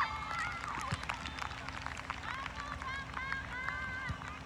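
Several high-pitched voices of women players shouting and calling to each other across a soccer pitch, over quick taps of running footsteps on artificial turf and a steady low hum.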